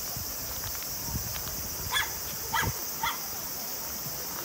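A dog barking three times, short barks about half a second apart in the second half.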